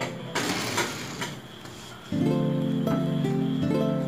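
A small toy car rolls briefly across a wooden tabletop, a short rushing noise about a second long near the start, after a light push. Background music with plucked-string notes drops out for the first two seconds and comes back in about halfway through.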